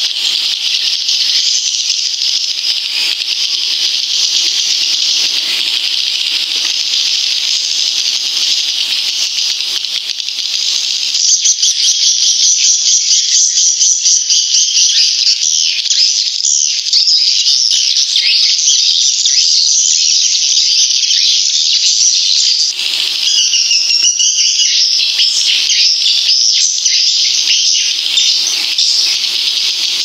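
Swiftlet lure call, the 'mother sound' played to draw edible-nest swiftlets into a bird house: a dense, unbroken, high-pitched chattering twitter of many swiftlet chirps. It grows louder about eleven seconds in.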